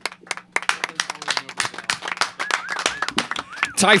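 A small group clapping in quick, uneven claps after a song ends, with a few short rising-and-falling high calls in the middle. A man starts talking right at the end.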